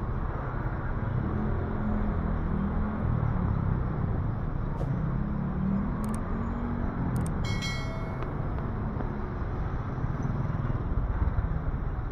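Slow city street traffic: cars and a van passing close by at low speed, their engines running with a low hum that swells and fades as each goes by. A brief high-pitched ringing tone sounds about seven and a half seconds in.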